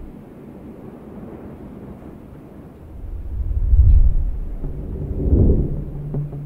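A deep, low cinematic rumble that swells into heavy booms about four seconds in and again near the end, with faint music tones creeping back in over the last second.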